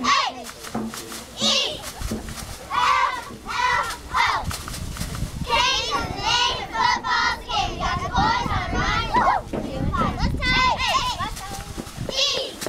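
Young girls' voices chattering and calling out, several overlapping at once, over a low uneven rumble of wind on the microphone.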